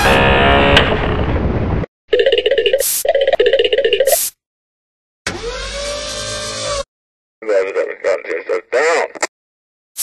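A loud, sustained, buzzy pitched tone that cuts off suddenly about two seconds in. It is followed by several short bursts of voice-like sounds, each a second or two long, with silences between them.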